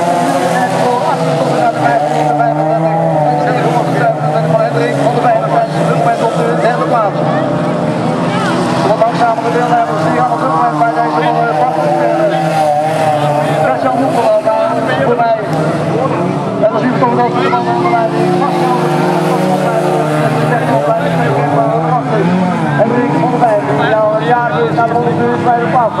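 Engines of several stock-class autocross cars racing on a dirt track, overlapping and revving up and down as they accelerate and lift for the corners.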